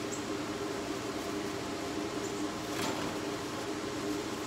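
Steady mechanical hum of a running motor, with a soft handling sound about three seconds in.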